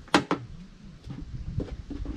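A grouting trowel knocking and scraping against a plastic bucket of tile grout. There are two sharp knocks at the very start, then softer scraping and another lighter knock about one and a half seconds in.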